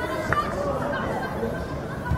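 Indistinct chatter of spectators' voices at a small outdoor football pitch, with one sharp knock about a third of a second in.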